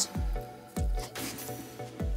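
Light background music with three short comic squish sound effects, each sweeping down in pitch into a low thud: one near the start, one just under a second in, and one at the end.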